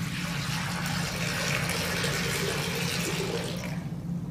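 Water poured from a pitcher into a glass baptismal font bowl, a steady splashing stream that tapers off near the end.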